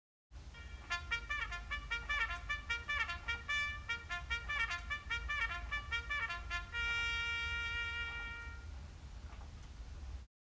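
Children imitating a trumpet and trombone duo with their mouths through cupped hands: a quick run of short notes for about six seconds, then one note held for about two seconds.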